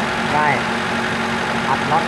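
A car engine idling steadily, with a man talking over it.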